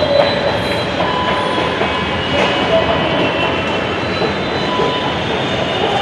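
A running escalator gives a steady mechanical rumble with a faint high whine, heard while riding on it.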